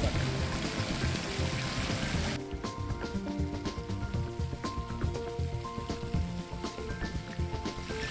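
Background music with held notes over fountain water splashing. About two and a half seconds in, the water noise drops away suddenly and turns muffled as the phone is plunged underwater, leaving the music and faint clicks.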